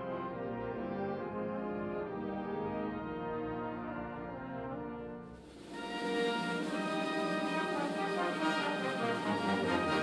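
Concert wind band playing live, with sustained brass-led chords. A little past halfway the sound briefly dips, then the full band comes in louder and brighter.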